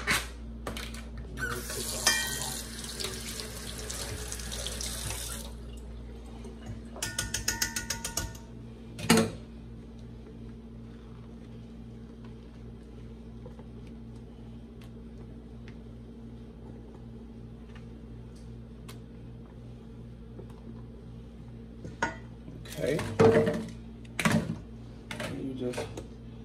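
Kitchen sink tap running for about three seconds, starting a couple of seconds in. It is followed by a quick rattling run of clicks and a single sharp knock, then a low steady hum.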